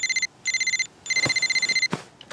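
Mobile phone ringing: three bursts of a high, fast-pulsing trill, the third longer than the first two, followed by a single knock near the end.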